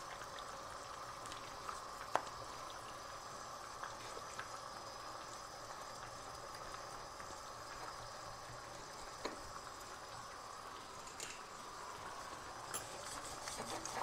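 Faint steady hiss with a couple of soft, isolated taps.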